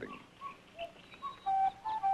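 Faint short bird chirps, then a flute comes in with a held note about one and a half seconds in, the start of a melody of background music.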